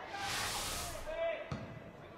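Broadcast replay-transition swoosh: a burst of hiss lasting about a second, then a single sharp thud about a second and a half in.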